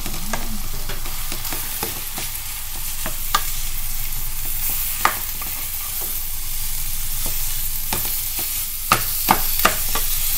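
Minced beef sizzling as it fries in a pan, stirred with a wooden spatula that knocks against the pan now and then, with a quick run of knocks near the end.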